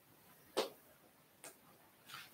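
Two faint taps on an interactive smartboard's screen, about a second apart, opening the board's slide navigation menu.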